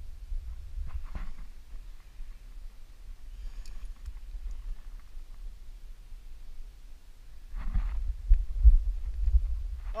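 Steady low rumble of wind buffeting a helmet-mounted camera's microphone, with a climber breathing hard. Near the end there is a louder stretch of breath or strained exhaling, with a few low knocks from his movement on the rock.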